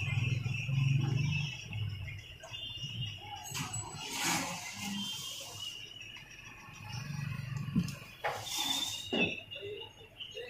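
Hands working the gear head loose from a Bosch angle grinder's body: two rasping scrapes of metal parts, about four and eight and a half seconds in, with a few light knocks around them.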